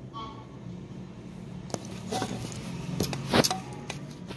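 Handling noise as the recording phone is picked up and moved: scattered rustles and knocks, the loudest a sharp knock a little before the end, over a steady low hum.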